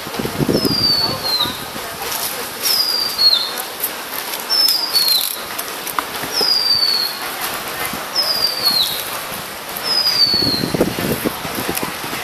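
Thin silver foil crinkling and rustling as it is handled, a crackle of small clicks throughout. A high whistled note slides downward about every two seconds.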